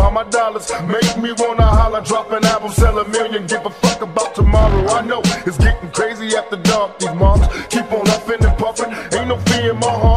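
Old-school gangsta rap track: a rapped vocal over a hip hop beat with kick drum and hi-hats.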